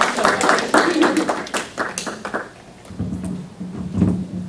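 A small group of people applauding with hand claps, which die away about two and a half seconds in.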